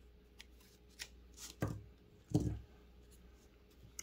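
Scissors snipping through nylon spawn netting, with hands rustling the mesh: a few light clicks, then two louder short handling sounds around the middle.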